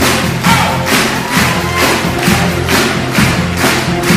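Full symphony pops orchestra, with strings, brass and percussion, playing an instrumental passage of a patriotic American medley, with a steady beat of about two strokes a second.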